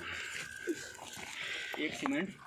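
Brief fragments of people's voices over a steady faint hiss, with a voice starting up near the end.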